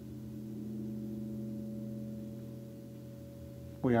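Soft sustained ringing tones, several low pitches held together like a chord, swelling slightly about a second in and then holding steady. Speech starts right at the end.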